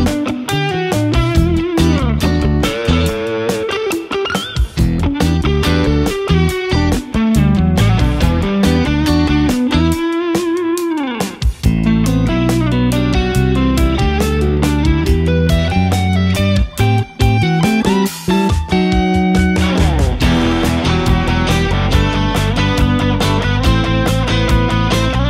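Electric guitar, a G&L Tribute Legacy with three single-coil pickups, played in a continuous rock performance of riffs and lead lines. There are falling pitch bends about 4 seconds in and again about 11 seconds in.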